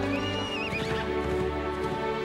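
A horse whinnies once in the first second, a high wavering call that falls away, over film score music with held notes.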